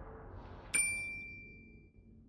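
A single bright bell-like ding about three-quarters of a second in, ringing out and fading over about a second. It is a notification-bell sound effect for an animated subscribe button. Under it, a low background rumble fades away.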